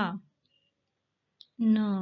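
Spoken words with a silent gap of over a second between them. Near the end of the gap comes a single short, faint click from a computer mouse, just before the next letter is spoken.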